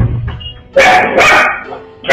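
A dog barks twice in quick succession, starting about three quarters of a second in.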